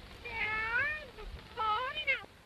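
Two cartoon kitten meows, one in the first second and another near the end, each bending in pitch. The soundtrack is played in reverse, so the meows run backwards.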